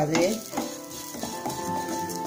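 Chopped vegetables sizzling in a hot nonstick kadai, stirred and scraped with a plastic spatula. A steady tone sounds in the background through the second half.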